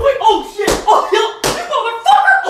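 A high-pitched voice talking, broken by two sharp knocks, about two-thirds of a second and a second and a half in.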